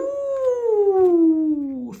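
A man's long, drawn-out excited "ohhh", held for about two seconds and sliding slowly down in pitch.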